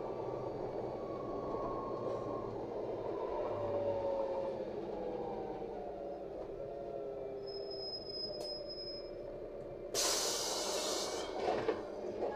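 Interior of a LiAZ 5292.67 city bus slowing for a stop: steady running noise with a drivetrain whine gliding down in pitch as it decelerates. A high beep sounds for a couple of seconds, then a sudden loud hiss of compressed air about ten seconds in, as the bus halts at the stop.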